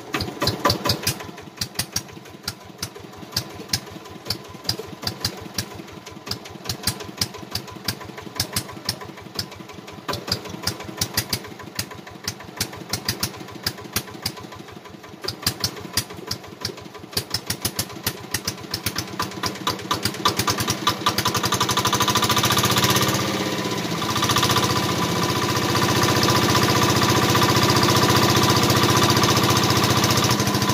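Small single-cylinder diesel engine, just started and smoking, running slowly with separate, evenly spaced firing beats. About twenty seconds in it speeds up to a louder, steady run as it drives the primed irrigation pump, and water starts pouring from the pump's outlet pipe near the end.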